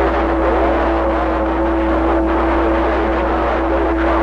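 CB radio receiver hissing with static, with a steady whistling tone and a low hum underneath.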